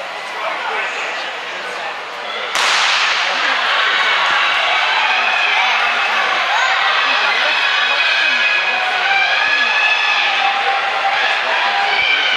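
A starter's gun cracks once about two and a half seconds in, starting a 400 m race. Crowd cheering and shouting follows at once and keeps on to the end, echoing in a large indoor hall.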